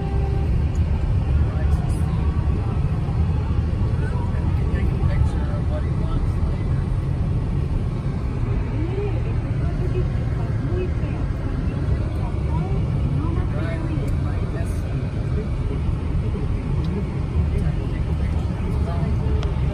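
Road and engine noise heard from inside a moving car's cabin: a steady low rumble that holds an even level throughout.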